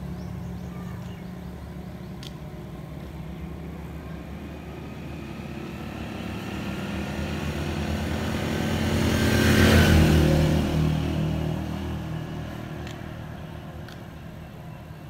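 A motor vehicle passing on a road: its engine noise builds to a peak about ten seconds in, then fades away.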